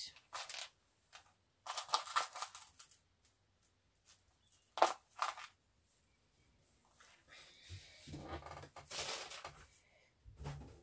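Rummaging through a basket of craft supplies: irregular rustling and clattering of handled items, with a sharp click about five seconds in and a longer stretch of rustling near the end.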